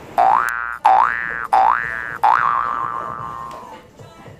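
Cartoon 'boing' sound effect: four quick rising springy glides in a row, the last one held with a wobbling pitch and fading away.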